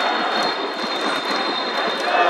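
Stadium crowd noise: a steady din of many spectators, with a thin, steady high tone over it that cuts off near the end.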